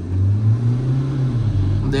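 Mahindra Scorpio-N's engine at full-throttle acceleration heard from inside the cabin: a steady low drone that lifts slightly in pitch about half a second in, over tyre and road noise.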